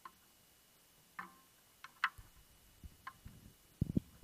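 Faint scattered clicks and knocks, about one a second, with a few low thumps just before the end: an acoustic guitar being lifted from its stand and handled.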